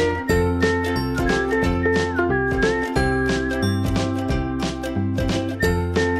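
Instrumental background music with a steady beat, a bass line and a high melody line.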